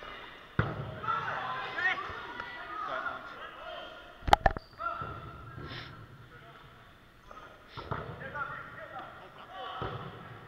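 Dodgeballs striking in a sports hall during play: a sharp hit about half a second in, then two loud hits in quick succession around the middle, with players shouting over the game.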